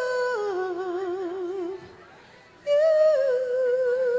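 A woman singing long held notes with a wide vibrato into a microphone, stepping down in pitch. She breaks off briefly about two seconds in, then holds a new note that slides down and sustains.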